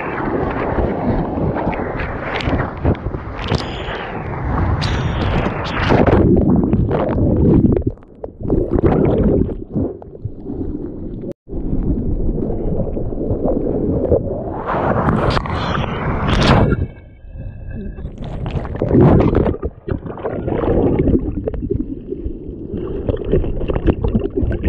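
Seawater splashing and rushing over a bodyboard close to the microphone, rising and falling in surges. It alternates with muffled churning as the microphone dips under the surface.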